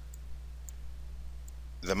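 A few faint computer-mouse clicks over a steady low electrical hum, with a man's voice starting right at the end.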